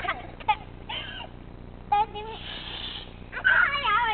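Short, scattered bits of voice and breathy laughter, with a brief hiss about two and a half seconds in and a louder vocal stretch near the end.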